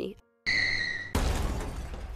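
A short high tyre squeal, then a sudden car crash with shattering glass about a second in, the crash noise dying away slowly.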